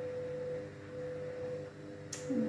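Washing machine running, heard as a steady humming tone.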